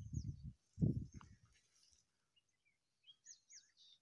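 A few short, high, falling bird chirps about three seconds in, faint against the quiet. Low rumbling noise fills the first second.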